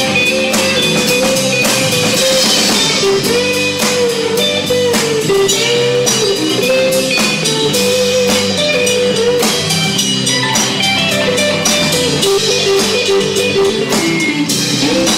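Live Americana/folk-rock band playing an instrumental passage: electric guitar, bass and drum kit, with a lead line that bends up and down in pitch.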